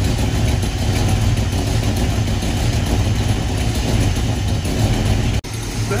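Ford V8 engine of a 1973 Mustang Mach 1 idling steadily, heard with the hood open. There is a brief break in the sound near the end.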